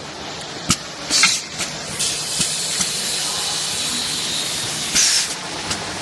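Automatic cup filling and foil-sealing machine running: a steady hiss with sharp mechanical clicks, and two short, louder bursts of air hiss about a second in and about five seconds in, as its air-driven heads cycle.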